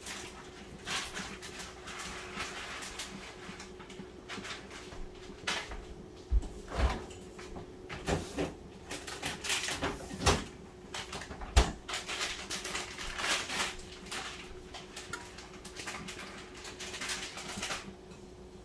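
A spoon stirring thick, creamy macaroni and cheese in a pot: irregular wet squelching and scraping, with a few sharper knocks of the spoon against the pot, over a faint steady hum.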